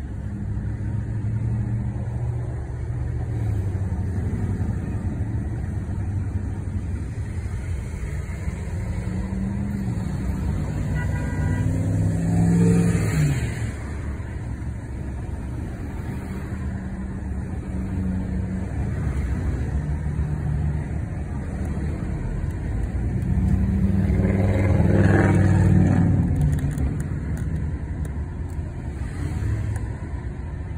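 Steady road and engine noise inside a moving car's cabin. Other vehicles pass close by twice, a sharp swell about twelve seconds in that drops off suddenly, and a broader, longer one around twenty-five seconds in.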